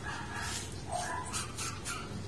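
A dog whining and giving a few short yips.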